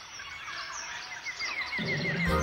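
Jungle ambience track: many small birds chirping in quick, short calls over a faint hiss. A low sound comes in near the end as the next music starts.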